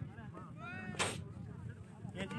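A cricket bat striking a taped tennis ball: one sharp crack about a second in, heard from the bowler's end of the pitch.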